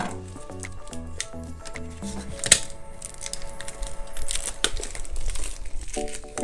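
Plastic shrink wrap crinkling and tearing in sharp crackles as it is pulled off a hardcover notebook, with background music playing throughout.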